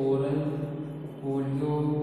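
A man's voice speaking slowly with long, drawn-out vowels, almost sing-song, with a brief pause a little past the middle.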